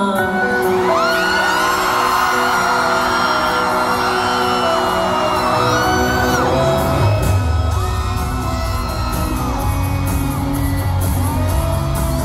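A live pop-rock band opening a song in an arena: held keyboard chords, with a bass line joining about halfway. Scattered whoops and cheers from the crowd rise over the music.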